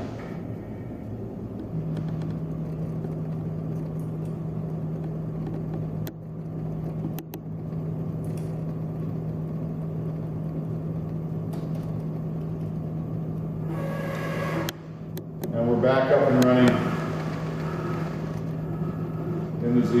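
Elrod Z-axis quill drive servo motor on a CNC knee mill running with a steady low hum, starting about two seconds in, as it moves the quill up during a tool check. A few faint clicks sound over it.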